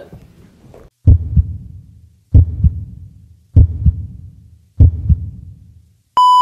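Heartbeat sound effect: four slow, deep double thumps (lub-dub), a little over a second apart, each fading away before the next.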